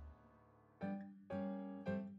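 Background music: a held chord dies away at the start, then after a short lull a keyboard plays three struck chords about half a second apart.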